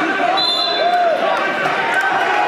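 Gym full of spectators' and coaches' voices shouting and talking over one another, with a short, high whistle blast about half a second in: the referee's whistle for the pin.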